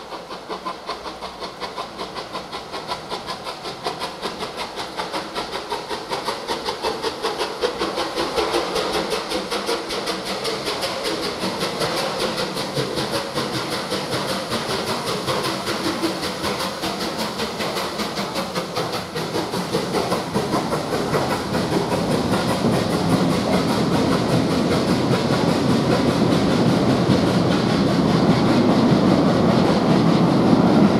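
Rebuilt Bulleid Merchant Navy class steam locomotive 35028 Clan Line, a three-cylinder 4-6-2, working under steam with a fast, regular exhaust beat and steam hiss, growing steadily louder as it approaches and passes. In the last third, a rumble of coach wheels on the rails builds as the Pullman carriages roll by.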